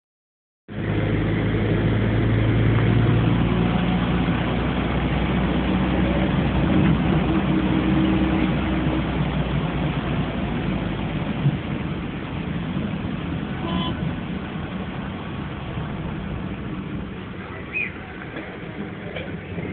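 Bus engine and road noise heard from inside the passenger cabin: a steady low engine drone that eases off and grows quieter about halfway through, with a single knock a little past the middle.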